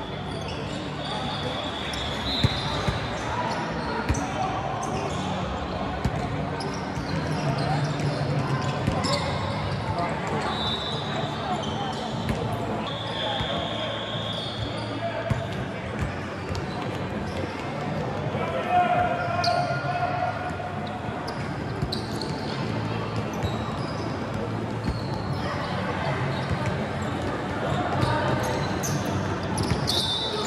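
Indoor game noise: overlapping voices of players and spectators, with occasional sharp impacts and short high squeaks.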